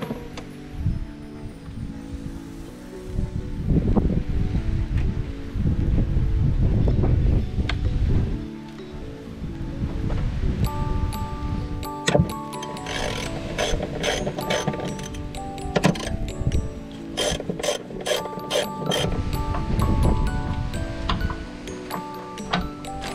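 Background music with a socket wrench ratcheting over it as the nuts on a strut tower are turned. The clicks come in dense runs, busiest in the second half.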